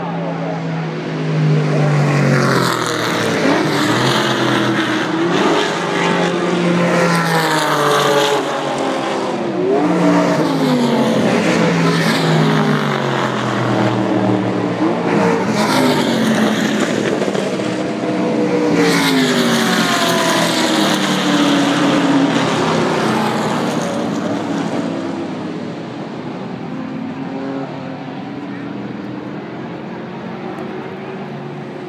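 Historic race cars going past at speed on the main straight, one after another, each engine note dropping in pitch as the car passes. The engine sound fades after about 24 seconds.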